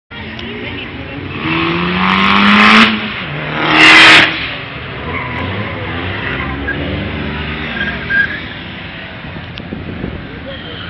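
Car engines revving as several cars are driven hard round a tight circuit, the pitch rising in the first three seconds. Two loud bursts of tyre squeal come at about two and four seconds in.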